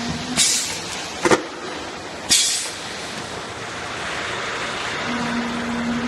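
Automatic measuring-cup filling and sealing machine running: a steady mechanical din, broken by two short sharp hisses of air about half a second and two seconds in, with a metallic knock between them. A low steady hum sounds briefly at the start and again near the end as the cycle repeats.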